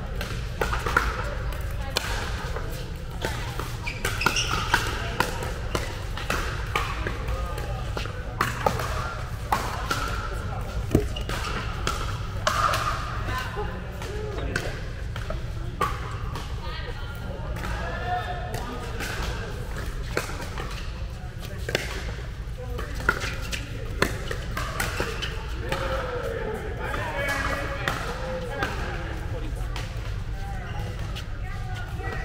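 Pickleball paddles striking a hard plastic ball: sharp, irregular pops from this court and neighbouring courts in a large indoor sports hall, with players' voices in the background.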